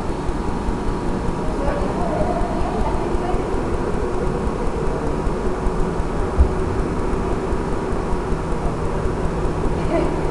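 Indistinct voices over a steady low rumble of room noise, with a few faint hum tones; a single short thump about six and a half seconds in.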